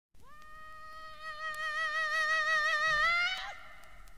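A male soul singer's long high wail opening the song. One held note whose vibrato widens, swooping upward and breaking off about three and a half seconds in.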